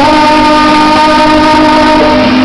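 Male singer holding one long, steady sung note into a handheld microphone, loud and amplified.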